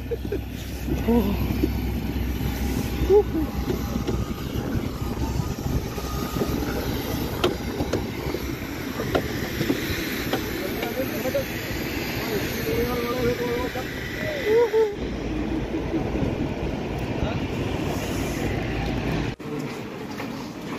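Wind buffeting the microphone in the rain on an airport apron, a steady low rumble with scattered voices of people walking nearby. The sound drops away abruptly near the end.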